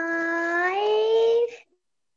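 A young child's voice holding one long, drawn-out word for about a second and a half, its pitch rising partway through, as she counts aloud.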